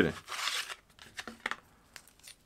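Rustling and crinkling of a bundled XLR microphone cable being unwrapped and uncoiled by hand, with a small click about a second and a half in.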